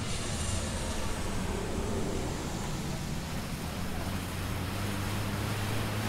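Steady low outdoor background rumble with a faint hiss, with no distinct events.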